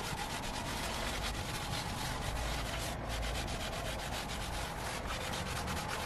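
A cleaning wipe rubbed briskly over the back of a car seat and its lower trim, a dense run of quick rubbing strokes with a short break about halfway.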